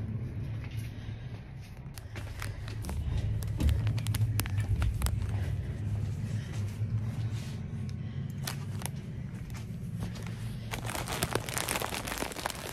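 Handling noise from a carried phone: its microphone rubs and crinkles against a printed bag, with many scattered clicks over a steady low hum.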